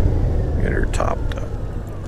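Honda GL1800 Gold Wing's flat-six engine running low with road rumble, fading as the bike slows, with a few short clicks about a second in.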